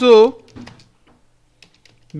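Computer keyboard typing: a few key clicks, a short pause, then a few more near the end.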